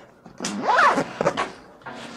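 Zip on a Lowepro Flipside 400 AW camera backpack being pulled shut: a rasping zip, rising and falling in pitch, starting about half a second in and lasting around half a second, followed by a couple of short clicks as the flap is handled.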